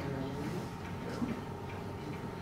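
Quiet room tone with a low steady hum and a few faint, irregular light ticks or clicks, one slightly louder a little past the middle.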